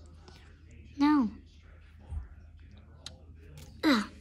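A child's voice gives one short exclamation falling in pitch about a second in, amid soft whispering and a few faint clicks of plastic toys being handled. Another voice starts near the end.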